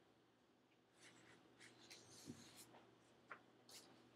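Faint, scattered scratches and taps of a stylus writing on a tablet screen, over a steady low room hum.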